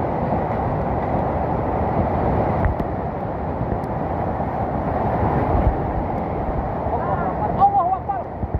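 Muddy flash-flood water rushing past in a continuous low roar. Raised human voices call out over it near the end.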